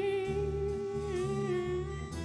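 A live indie-rock band playing. A long wordless vocal note is held with vibrato and steps down in pitch a little after a second in, over bass guitar and soft drums.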